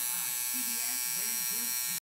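Tattoo machine buzzing steadily as its needles work ink into the skin of the chest.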